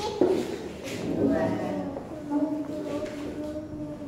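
Voices talking and calling out, with one voice holding a long, steady sung note for about a second and a half in the second half.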